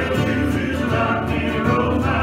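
Worship music: several voices singing a song together, accompanied by acoustic guitar.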